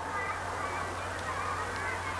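A pause in speech: quiet room tone with a steady low hum and faint, indistinct background sounds.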